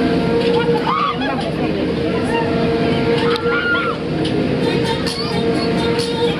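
Fairground din: scattered voices and chatter over a steady drone from a running Fairmatt Miami ride.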